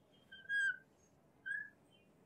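Marker squeaking on a glass lightboard as lines are drawn: two short squeaks, one about half a second in and one about a second and a half in.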